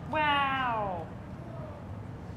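A single drawn-out vocal call from a high voice, falling steadily in pitch over about a second, loud against the room's background noise.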